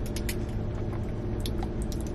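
Sipping an iced milk tea through a plastic straw, with small scattered clicks, over a steady low hum inside a car cabin.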